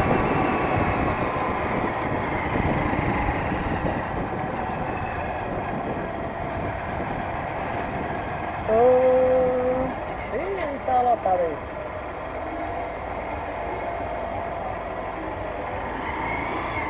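Small motorcycle's engine running at low speed, with wind and road noise, easing off toward the end as the bike slows. About nine seconds in comes a held tone of about a second, then a few brief wavering voice-like sounds.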